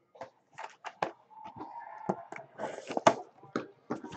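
Shrink-wrapped cardboard trading-card hobby boxes being handled on a wooden table: a string of light taps and knocks as a box is lifted off a stack, with a short rustling scrape near the end.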